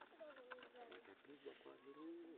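Near silence with a dove cooing faintly in the background, one slow falling coo in the first second and shorter notes later, with faint voices.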